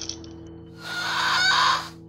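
A bird-like squawk, the cry given to an attacking feathered raptor, about a second long, starting near the middle, over a low, steady music drone.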